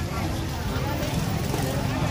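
People talking at a busy outdoor market stall, over background bustle and a steady low rumble.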